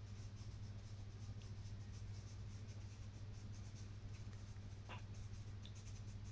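Charcoal stick scratching on textured pastel paper in quick, short, faint strokes as the foreground is shaded, over a steady low hum.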